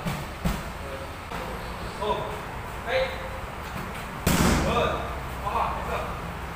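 Knee strikes landing on leather Thai pads: two sharp slaps at the start and a heavier, louder pad strike a little after four seconds, with short vocal sounds in between.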